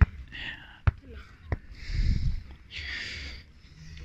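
Faint voices and breathy hissing, with three sharp clicks in the first second and a half.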